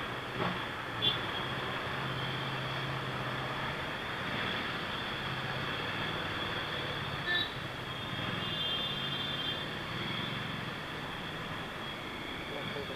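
Motorcycle engines running steadily in slow city traffic, heard from the rider's own bike, with a low steady engine note under road and traffic noise. Two brief louder blips come about a second in and about seven seconds in.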